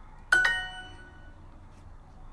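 Duolingo app's correct-answer chime: a quick two-note ding, the second note higher, ringing out and fading within about a second, marking the typed translation as right.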